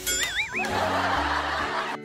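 Comedy sound effects over light background music: a short wobbling whistle-like tone, then about a second and a half of canned laughter that cuts off suddenly.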